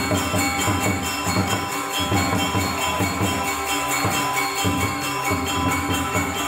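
Balinese gamelan orchestra playing: bronze metallophones ring out many steady tones over recurring low drum strokes.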